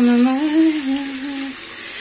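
A woman humming one long note that lifts a little and falls again, stopping about one and a half seconds in, over tap water running steadily onto a bowl in a sink.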